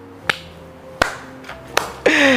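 A man clapping his hands: three single claps about two-thirds of a second apart, over faint background music.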